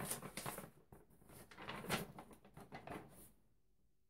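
Paper instruction sheet rustling in irregular bursts as it is unfolded and handled, stopping about three seconds in.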